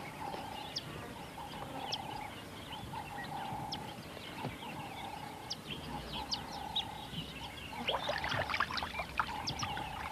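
Wildlife ambience: a short buzzy call at one pitch repeated about every second or so, with scattered short high chirps that grow busier near the end.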